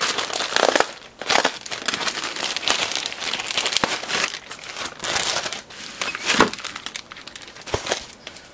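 Plastic postal mailer bag being pulled open and handled, crinkling and rustling with sharp crackles, then the clear plastic bag around a power adapter crinkling as it is lifted out.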